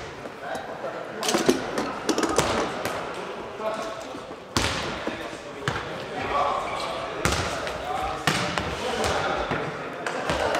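A nohejbal ball being kicked and bouncing on a wooden sports-hall floor: a series of sharp thuds that echo around the hall, the loudest about halfway through and again a few seconds later.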